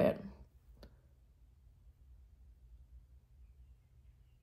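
Near silence, room tone with a faint low hum, broken by one brief, sharp click just under a second in.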